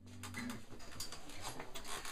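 Faint handling noise: uneven rubbing and scraping with scattered light clicks, over a low hum, as hands and clothing move against an electric guitar before any note is played.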